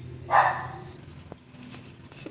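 A puppy barks once, briefly, a moment after the start.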